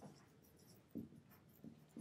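Faint scratching of a dry-erase marker writing on a whiteboard, a few short strokes with one about a second in and another near the end.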